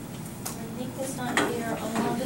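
Murmured voices in a classroom, with two sharp clicks or clinks: a light one about half a second in and a louder one a little past the middle.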